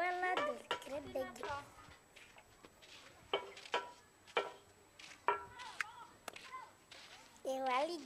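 A young child's high-pitched voice for the first second or so, then a quieter stretch broken by a handful of short, sharp sounds, and the voice again near the end.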